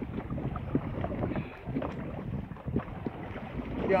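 Wind rumbling on the microphone over the water noise of a small open boat being paddled at sea, its engine not running, with a few faint knocks.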